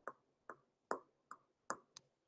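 Stylus tapping on a tablet screen during handwriting: about six faint, sharp clicks, roughly two a second.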